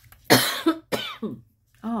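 A woman coughs hard twice in quick succession, then gives a short 'oh'. She puts the coughing down to incense smoke bothering her throat.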